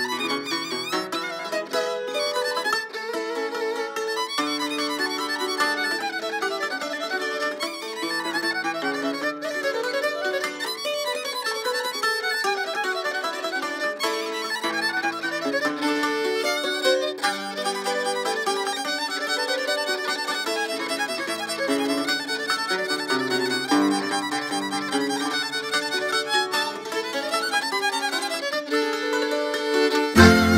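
Fiddle playing a quick, ornamented Transylvanian Hungarian verbunk (men's recruiting dance) tune in the Upper Maros style.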